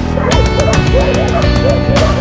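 Background rock music with a puppy's short yips over it.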